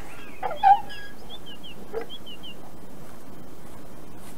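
Outdoor sound-effects ambience: a short, louder animal call about half a second in, then a quick series of short falling high bird chirps, over a steady background hiss.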